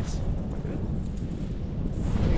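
Airflow buffeting the microphone of a pole-mounted action camera on a tandem paraglider in flight, a steady low rumbling rush of wind.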